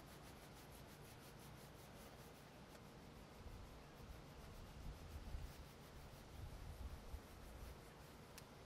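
Faint rubbing of a hand-held cloth scrubbing in quick, repeated strokes over a truck's painted door panel, working off dissolved enamel spray paint. A low rumble underneath swells in the middle.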